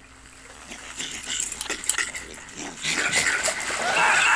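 Film soundtrack: a small animal squeaking and squealing over splashing bathwater, quiet at first and growing much louder from about three seconds in.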